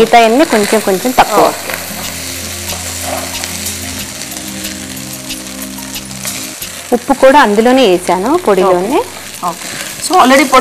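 Wooden spatula stirring and scraping rice in a pot on the stove, with a light sizzle. A voice is heard briefly at the start and again from about seven to nine seconds in, and steady low tones hold through the middle.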